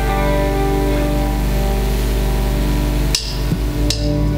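Live church band music: an electric guitar and sustained chords holding steady tones. About three seconds in the music breaks off abruptly with a click, and another click follows near the end.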